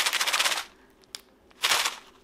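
Small resin diamond-painting drills rattling inside a plastic packet as it is shaken: a dense, rapid clatter for about half a second, then a shorter burst near the end.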